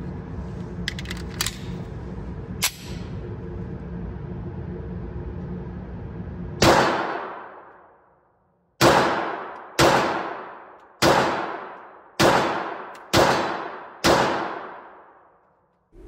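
Sig Sauer P938 subcompact 9mm pistol fired seven times with 147-grain loads in an indoor range, each shot ringing off the walls. The first shot comes about six and a half seconds in, then after a pause of about two seconds six more follow roughly a second apart. Before the shooting there is a steady low hum with a few light clicks.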